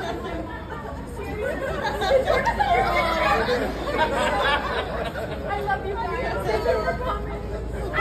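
Overlapping chatter of several people talking at once close by, over a steady low street hum.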